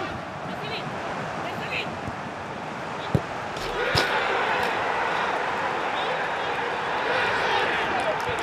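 Football kicked in an empty stadium: a sharp thud about three seconds in and another about four seconds in, as the goal is scored. It is followed by players shouting and yelling in celebration, echoing around the empty stands.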